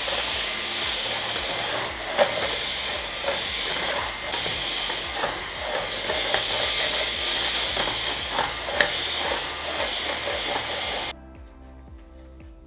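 Cordless handheld vacuum cleaner running at full power with a steady high whine while its nozzle is drawn over a bare wooden tabletop, with small clicks and knocks as it moves over the boards. The motor cuts off abruptly near the end.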